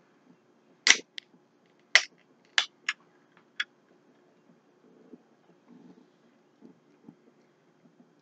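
Twist-off cap of a small energy-drink bottle being opened by hand: about six sharp clicks over roughly three seconds as the cap turns and its seal breaks, followed by a few faint soft sounds.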